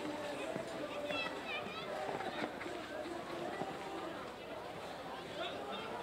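Indistinct voices of spectators and a steady hum of outdoor crowd noise, with no clear words.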